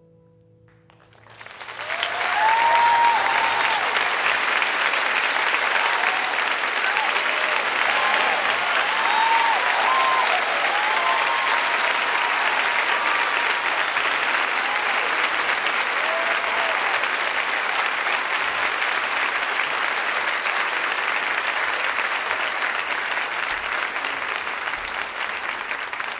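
The last faint piano tones die away, then a large audience breaks into loud applause about a second and a half in, with cheers and whoops over it during the first several seconds, the clapping carrying on steadily and easing slightly near the end.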